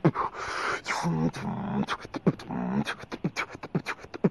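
Solo beatboxing: fast mouth percussion of sharp clicks and hissing snare-like sounds, woven with short hummed, pitched vocal tones that bend up and down.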